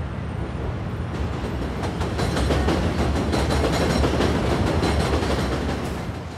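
A red double-deck regional train passing over a railway bridge, its wheels clattering rapidly. The sound grows louder about two seconds in and eases off near the end.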